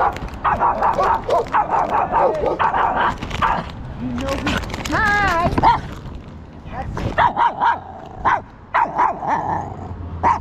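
Small shaggy dog barking in quick runs of short barks, with one wavering drawn-out whine about five seconds in.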